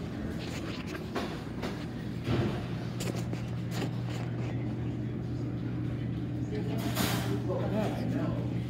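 Indoor shop ambience: a steady low hum runs throughout, with knocks and rubbing from a handheld phone being swung about, the loudest about two seconds in and near seven seconds in, and faint voices in the background.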